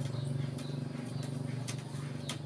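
Cotton-fluffing bow string being plucked to loosen raw cotton: a low twanging hum, with a sharp snap of the string near the end.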